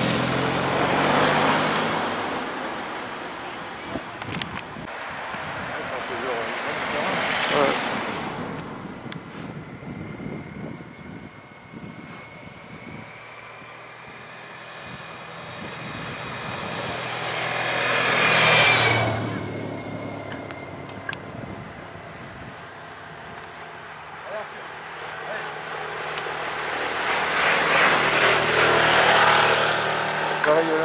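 Race-escort motorbikes and cars passing one after another along a narrow country road with a bunch of racing bicycles. About four times the sound swells and fades: once near the start, again around a quarter of the way in, a loud pass about two-thirds in, and again near the end.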